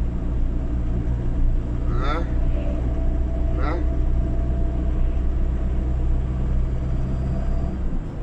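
In-cab drone of a Ford Transit 2.4 TDCi diesel van driving at a steady speed: engine and road noise with a faint steady whine. The drone drops away just before the end.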